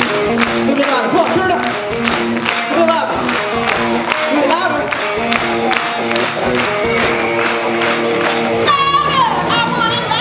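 Live rock band vamping on held, stepping chords while hands clap along to a steady beat. Near the end a voice sings out a sliding note.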